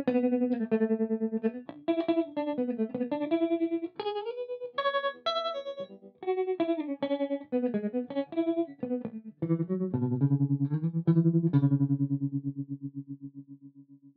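Electric guitar (PRS SE Custom 24) played through an optical tremolo pedal, the Spaceman Effects Voyager I, into a Mesa/Boogie Mark V amp: a riff of picked notes and chords, its volume chopped into fast, even pulses. Near the end a chord is held and throbs as it fades away.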